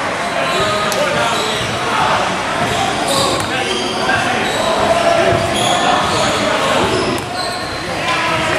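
A basketball bouncing on a gym court, with voices of players and spectators talking over one another in a large hall.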